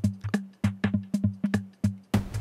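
Drum machine beat from Pro Tools' Boom plugin: a quick, uneven pattern of short electronic drum hits, about five a second, each with a brief low pitched body.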